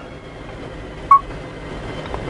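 A single short electronic beep from the G-SCAN2 scan tool as its stylus press on OK is registered, about a second in, over a steady background hiss.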